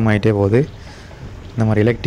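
A man talking, with a pause of about a second in the middle.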